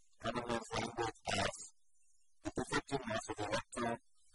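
A man speaking in a lecture, in short phrases with a pause of just under a second near the middle.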